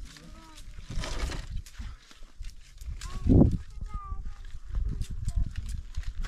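Voices and short wavering animal calls, with a steady low rumble of wind or handling noise and a loud low thump about three seconds in.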